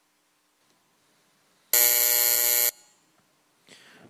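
Electronic voting-session buzzer sounding once, a harsh, low, steady buzz lasting about a second and cutting off sharply. It signals that the voting time has run out and the vote is closed.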